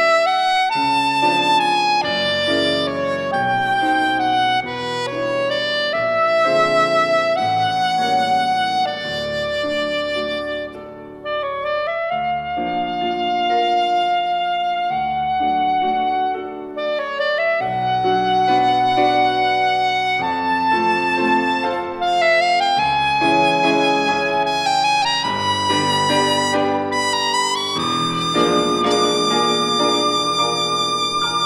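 Soprano saxophone playing a lyrical melody of held notes with vibrato, accompanied by grand piano chords; the line breaks briefly about eleven seconds in.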